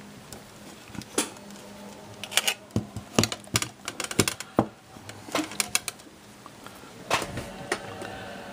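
Irregular clicks and light knocks of a Sencore FE14 meter's metal chassis and circuit board being handled and turned over on a workbench, busiest in the middle few seconds.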